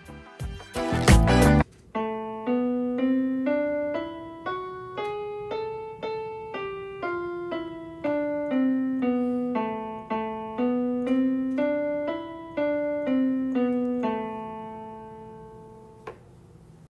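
A loud burst of crackling noise for the first second and a half. Then a piano plays the A melodic minor scale one note at a time, about two notes a second: up an octave with F sharp and G sharp, back down with F and G natural, then up to E and down to A. The last low A is held and fades.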